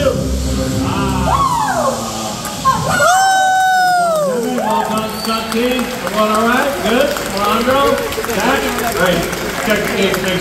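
Performers shouting and yelling across an outdoor stunt-show set. About three seconds in comes one long, loud yell that holds and then slides down in pitch. Before it a low rumble dies away.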